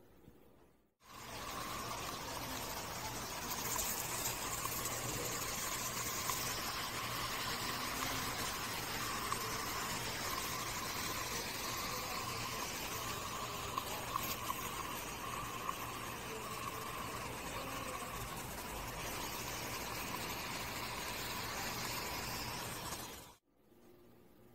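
Water spraying in a steady, continuous rush, starting suddenly about a second in and cutting off suddenly near the end.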